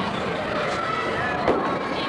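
Overlapping chatter of a crowd of children and adults in a gymnasium, with one sharp knock about one and a half seconds in.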